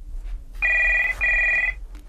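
Telephone ringing: a double ring of two short trilling bursts, about half a second each, a little over half a second in.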